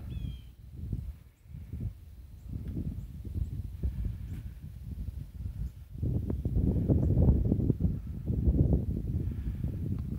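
Wind buffeting a handheld microphone in the open, a low uneven rumble that grows louder about six seconds in, with a faint short bird chirp near the start.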